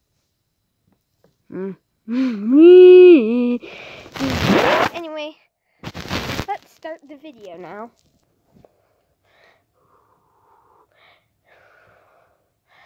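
A child's wordless vocal cries: a long, loud, wavering cry that rises and falls in pitch, then two loud noisy bursts and a few shorter cries, all over by about eight seconds in.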